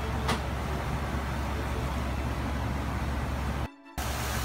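Commercial gas stove burner running at a high flame with a steady low rumble, a short click a fraction of a second in; the sound cuts off abruptly just before the end.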